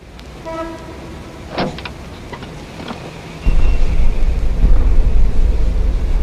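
A noisy stretch with a few short tones and a sharp click, then the song's bass-heavy reggaeton beat cuts in suddenly about three and a half seconds in and carries on loudly.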